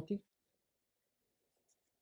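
Near silence after the tail of a spoken word.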